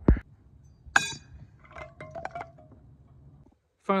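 A low thump, then about a second in a thrown knife strikes a stack of dip cans with one sharp, ringing clink. The cans then clatter and rattle in a quick run of smaller clinks as they are knocked off the post.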